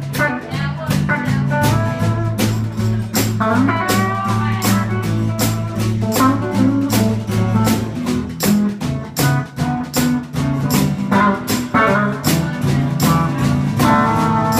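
Live blues band playing: electric and acoustic guitars over a drum kit keeping a steady beat, with a guitar line bending notes partway through.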